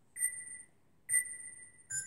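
Electronic music triggered from a Launchpad Pro MK3 pad controller: two high synth notes of the same pitch about a second apart, each ringing briefly, then a lower note starting near the end.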